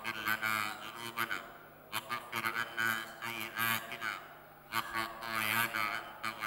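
A man's voice chanting in Arabic, drawn out melodically in phrases of about two seconds with short pauses between.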